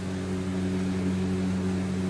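Steady low electrical hum of a kitchen appliance motor, one unchanging pitch with overtones.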